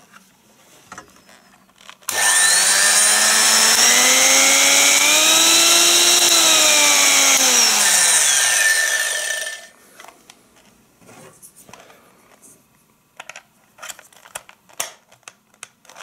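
Old 140-watt electric hand mixer motor running with no beaters fitted. It switches on abruptly about two seconds in, its whine rising in pitch and then falling, and cuts off after about seven and a half seconds.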